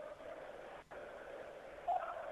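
Faint, even crowd noise from a football stadium, heard behind a pause in live radio commentary, with a brief dropout a little under a second in.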